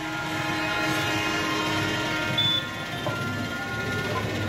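Several kombu, the C-shaped brass horns of a Kerala temple percussion ensemble, blown together in long held notes, with a low drum rumble underneath.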